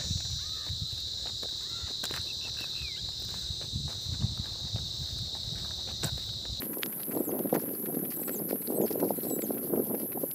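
Steady high-pitched chorus of insects, crickets by their sound, with irregular low rustling underneath. About two-thirds of the way through the chorus changes abruptly to a higher, thinner pitch.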